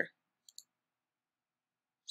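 A computer mouse button clicked once, heard as two faint ticks close together about half a second in, as a position block is selected in the editor.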